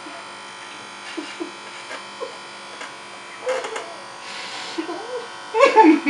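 Electric hair clipper running steadily with a constant-pitched buzz as it is worked over the hair at the front of the head. Short vocal bursts sound over it about three and a half seconds in and near the end.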